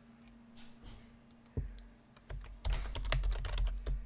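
Typing on a computer keyboard: a few scattered keystrokes, then a quick run of key clicks over the last second and a half or so.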